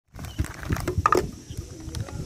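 Paper food bags crinkling and rustling as they are handled, with irregular crackles and a few low knocks against the table.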